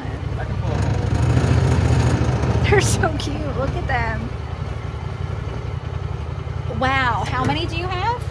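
A vehicle engine runs steadily at low speed, making a constant low rumble. Short pitched calls rise over it about three and four seconds in, and more strongly near seven seconds.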